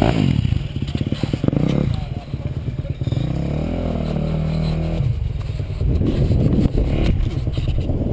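Dirt bike engine running at idle, with a short rise and fall in engine speed around the middle.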